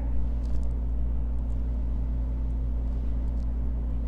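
A steady low mechanical hum, with a few faint clicks about half a second in and again past three seconds.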